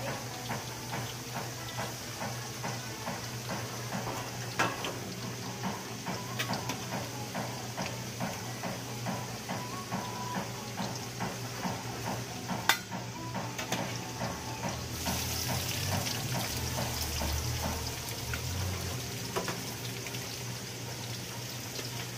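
A pot of sinigang broth bubbling steadily with a fine crackle, and a few sharp clinks of a utensil against the pot, the loudest about four and a half and twelve and a half seconds in, as the cooked fish is lifted out.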